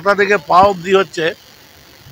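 A man's speech for about the first second and a half, then a short pause with faint background noise.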